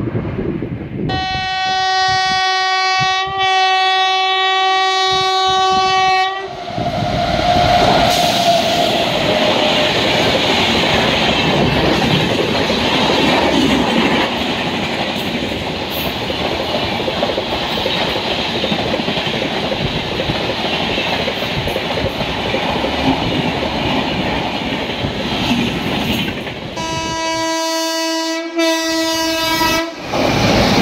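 An Indian Railways electric locomotive sounds one long, steady horn blast lasting about five seconds, starting about a second in. The passenger coaches then pass close by with a steady rumble and clatter of wheels on the rails. Near the end a second electric locomotive horn sounds a long blast.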